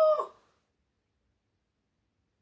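A woman's drawn-out exclamation "Oh!", its pitch rising and then falling, ending about half a second in.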